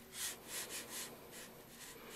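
Watercolour brush bristles stroking across paper, about four short, faint swishes in quick succession as thin branch lines are pulled outward.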